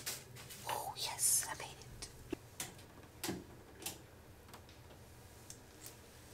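A person whispering softly for a second or two near the start, followed by a few small clicks against quiet room tone.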